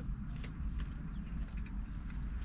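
Faint chewing clicks in the first second over a low steady rumble, heard inside a parked car's cabin.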